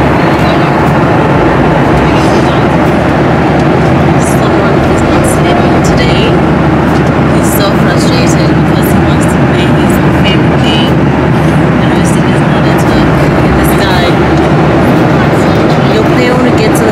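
Steady, loud roar of an airliner cabin in flight: engine and airflow noise with no break, with scattered small clicks over it.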